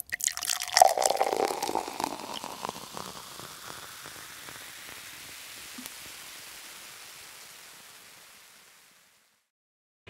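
An added intro sound effect: a flurry of crisp ticks and a brief tone in the first couple of seconds, then a soft wash that fades away and dies out about nine seconds in.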